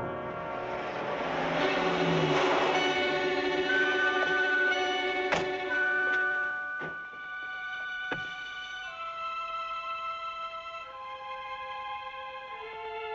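Dramatic film score music with loud held chords and a few sharp hits, quieting partway through into single held notes that step downward.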